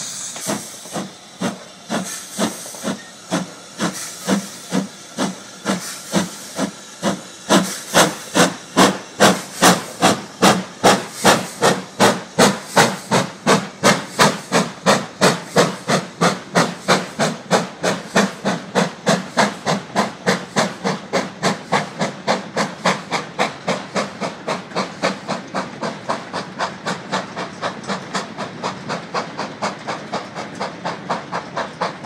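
Steam locomotive hauling a train of mineral wagons, its exhaust beats quickening from about one a second to about three a second as it gathers speed. The beats are loudest about ten seconds in, and a hiss of steam at the start fades within the first second.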